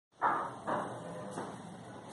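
Two dull knocks about half a second apart, each fading quickly, then a fainter third knock.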